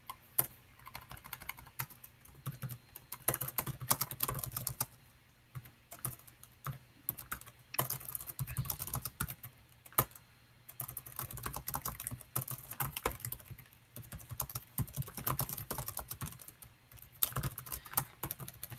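Typing on a computer keyboard: irregular bursts of key clicks with short pauses between them.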